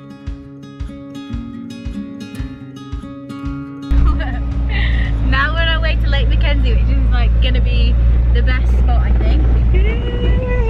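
Acoustic guitar music strummed and plucked for about four seconds, then a sudden cut to the loud, steady low rumble of a 4x4 driving off-road, heard from inside the cabin, with voices exclaiming over it.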